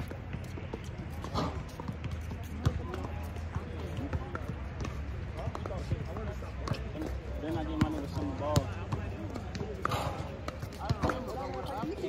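Basketball bouncing on an outdoor hard court during a pickup game, with a few sharp thuds scattered through, under players' indistinct shouting.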